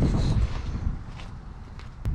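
Wind buffeting the microphone and handling noise from a carried camera, with a few light footsteps on concrete. Louder in the first half-second, then easing.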